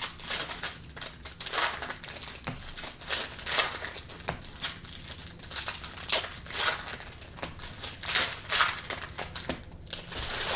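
Foil wrappers of 2020 Optic Football hobby card packs crinkling and tearing as the packs are ripped open one after another, in irregular bursts, with the cards handled in between.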